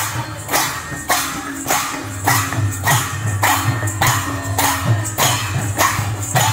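Kirtan percussion: several clay khol barrel drums beaten with hand cymbals clashing on a steady beat, about two strokes a second.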